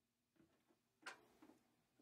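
Near silence with a few faint clicks and ticks, the sharpest about a second in, from RCA cable plugs being handled and pushed into jacks on the back of an amplifier.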